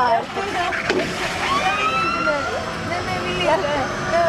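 Riders laughing and exclaiming aboard a flying roller coaster, over the running noise of the ride, with a sharp knock about a second in and a drawn-out rising tone just after.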